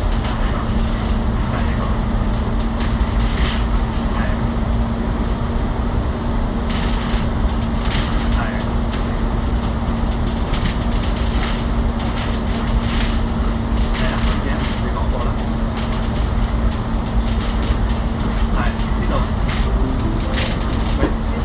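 Interior noise of a New World First Bus ADL Enviro500 MMC double-decker cruising at steady speed. Its Cummins L9 Euro 6 diesel and ZF Ecolife automatic drivetrain keep up a constant drone with a steady hum, over road rumble, with scattered short rattles and clicks from the body.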